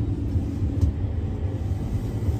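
Steady low rumble of a vehicle's engine and tyres heard from inside the cab while driving along a lane.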